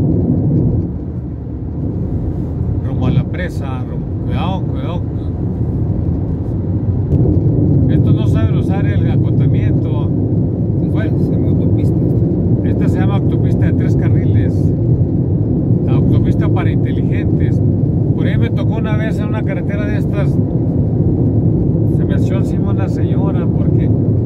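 Steady road and engine noise of a vehicle driving at highway speed, heard from inside the cab, easing a little about a second in and growing louder again around seven seconds. Voices talk over it now and then.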